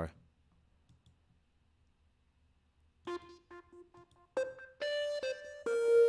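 Quiet for about three seconds, then the project's guitar part plays back on its own: four short repeated notes, then held melody notes. It is soloed to check how much high end it holds.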